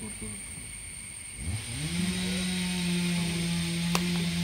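A small engine revs up about a second and a half in and then runs at a steady speed, a steady hum with a hiss over it. A single sharp click comes near the end.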